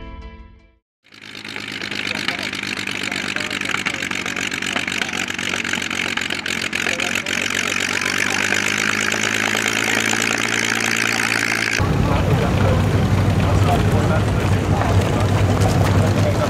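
Single-engine vintage racing monoplane, a Percival Mew Gull replica, taxiing with its engine and propeller running steadily. About twelve seconds in, the sound switches abruptly to a lower, steadier rumble. Background music is fading out at the very start.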